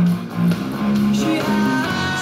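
Instrumental stretch of a rock song with electric guitars, and an electric bass played along with it in a line of held low notes that steps upward near the middle.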